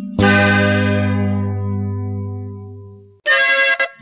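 A norteño band's final chord, accordion over bass, held and dying away over about three seconds at the end of a corrido. After a moment of silence, the next corrido's accordion intro starts up in short choppy phrases.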